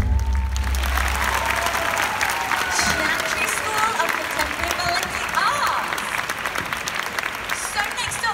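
Audience applauding and cheering as the last low note of the music dies away over the first two seconds.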